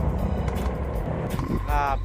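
Motorcycle engine running with wind rumble on the microphone while riding. A man's voice starts near the end.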